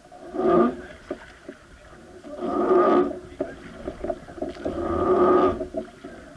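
Wooden oar of a river boat creaking against its mount with each rowing stroke: three drawn-out groans, about every two and a half seconds.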